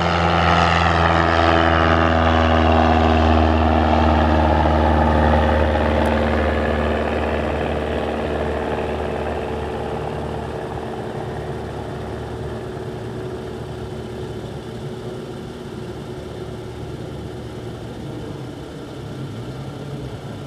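Cessna 172S Skyhawk SP's four-cylinder Lycoming IO-360 engine and propeller running at takeoff power as the plane climbs out. The engine note is loudest in the first few seconds, drops slightly in pitch, then fades steadily as the aircraft flies away.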